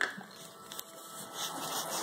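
Rustling and light knocks of a toddler rummaging in a cardboard toy box, with a sharper knock right at the start.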